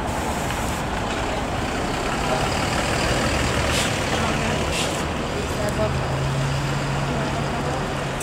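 Mercedes-Benz Citaro city bus engine running as the bus pulls past and drives away, over steady street traffic noise. Two short hisses of air come about four and five seconds in.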